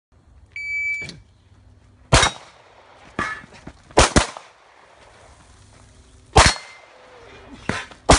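A shot timer gives one short electronic start beep. About a second later a pistol fires single shots, roughly six over the next six seconds, including a quick pair about four seconds in.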